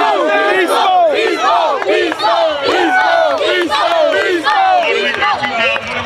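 A group of children shouting and cheering together, many high voices overlapping in short yells. They thin out a little near the end.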